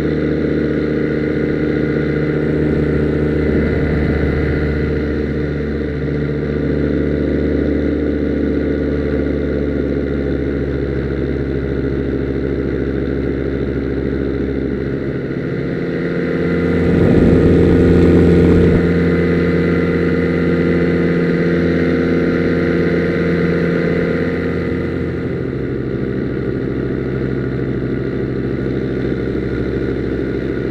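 Miniplane paramotor's two-stroke engine running steadily in flight. It gets louder and changes pitch for a few seconds just past the middle, then settles, and drops back a little later on.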